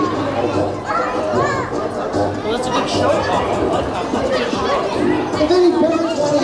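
A crowd of young children chattering and talking over one another.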